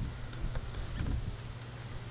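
Wind rumbling on the microphone, with a few light clicks of a metal hive tool working a wooden hive frame loose about a second in.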